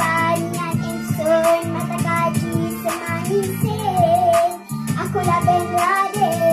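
A child singing into a light-up toy microphone over backing music with a steady beat, holding long notes in the melody.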